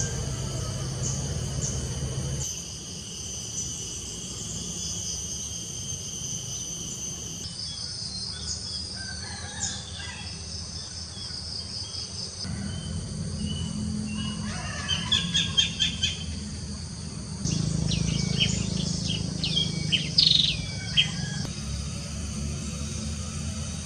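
Countryside nature ambience: a steady high insect drone early on, then birds calling, with a quick run of repeated chirps past the middle and several clear whistled calls near the end. A low steady background noise runs underneath, and the sound shifts abruptly every few seconds as short recordings are spliced together.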